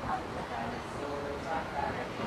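Indistinct voices of a group of people, short scattered calls and chatter over a steady background hiss.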